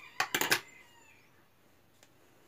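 Scissors snipping through crochet yarn: a few sharp clicks in quick succession at the very start, then quiet handling.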